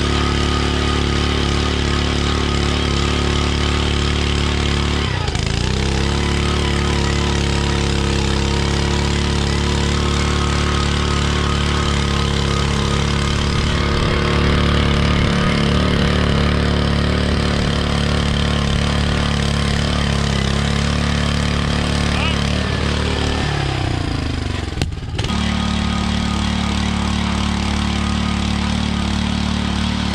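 Gas-powered two-man earth auger running steadily as it bores a footing hole in the soil. Its engine pitch sags under load about five seconds in and again near the end before picking back up.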